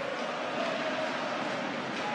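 Steady crowd noise of an ice hockey arena during play.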